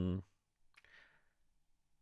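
The tail of a hummed "hmm" ending just after the start, then a faint click and a short soft hiss a little under a second in, then near silence.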